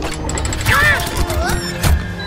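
Cartoon sound effects over music: a mechanical rattle of a key turning in a treasure chest's lock, ending in one sharp click as the lock springs open.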